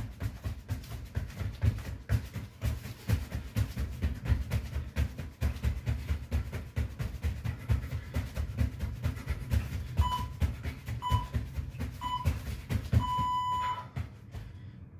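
Rapid, irregular thuds of feet landing on the floor during fast jumping jacks. Near the end an interval timer gives three short beeps a second apart, then one long beep marking the end of the 15-second work interval.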